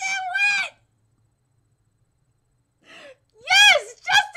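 A woman's high-pitched, wordless excited squealing: a held note at the start, a pause of about two seconds, then a squeal that rises and falls in pitch near the end.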